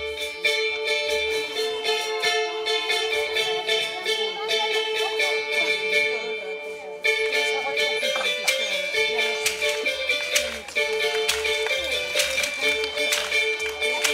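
A baglamá, a tiny Greek long-necked lute, played with rapid strokes that make sustained high notes. Its very small soundbox gives a very high-pitched sound. Light hand percussion taps along with it.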